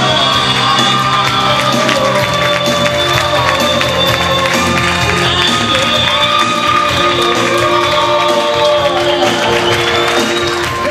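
A pop song played loudly over a PA system, with long held sung notes, while the audience claps along.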